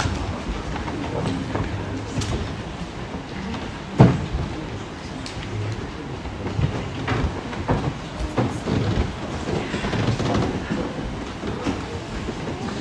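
Low rumbling room noise in a church sanctuary, with scattered small knocks and rustles of people and things being moved, and one sharp knock about four seconds in that is the loudest sound.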